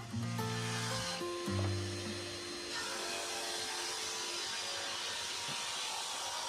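Bench-top drum sander with a 120-grit drum, a steady rasping hiss as a glued padauk and maple segmented ring is taken down in a light pass. Background music with held notes plays over it, strongest in the first three seconds.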